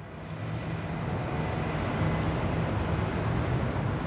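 City traffic ambience fading in over the first second or so, then holding as a steady wash of road noise with a low hum.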